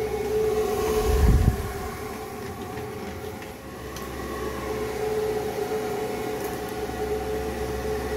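Homemade 5-gallon bucket swamp cooler running: its 120 mm computer fan and small water pump give a steady pitched hum. A loud low thump about a second in as the bucket is handled and tipped.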